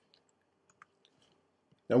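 Near silence with a couple of faint, short clicks, then a man starts speaking near the end.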